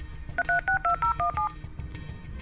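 Telephone keypad tones: a quick run of about eight short beeps as a phone number is dialed.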